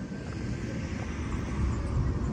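Steady low rumble of vehicle traffic, slowly growing louder.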